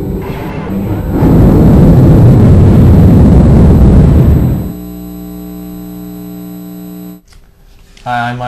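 Title-sequence intro music and sound effects: a loud, dense rushing sound for about three seconds, then a steady low held chord for about two and a half seconds that cuts off about a second before the end.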